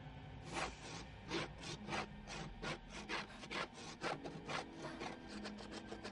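Fingers scraping repeatedly at the painted surface of a wooden door, flaking the paint off. The scrapes come about three a second, growing quicker and lighter near the end.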